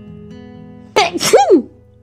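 A woman sneezes once, loudly, about a second in. Quiet acoustic guitar background music plays underneath.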